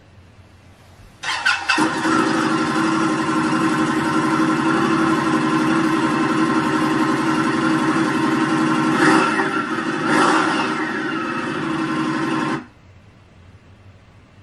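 Indian motorcycle V-twin on its stock exhaust, started about a second in, idling, then blipped twice near the end before cutting off suddenly. It is heard played back through a TV's speakers.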